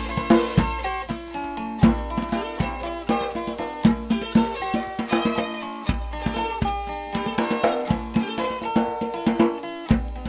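Live blues jam: guitars playing notes and chords over a djembe and other hand-played percussion keeping a steady beat.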